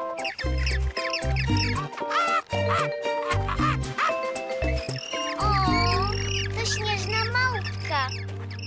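Playful cartoon soundtrack music with short, bouncy bass notes, overlaid by squeaky, warbling cartoon vocalisations with no words. About five and a half seconds in, the bass settles into one long held note under the squeaks.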